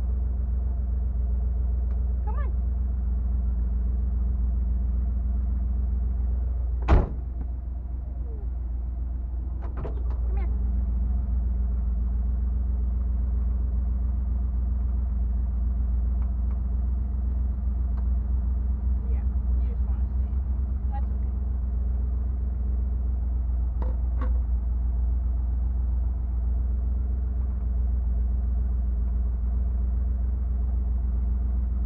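The 1977 Jeep Cherokee's engine idling steadily, heard from inside the cab, with one sharp click about seven seconds in.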